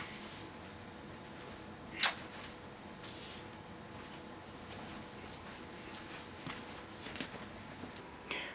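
Quiet room tone with a faint steady hum and hiss, broken by a short sharp handling noise about two seconds in and a softer one a second later: the camera being handled as the wireless receiver is plugged into its mic input.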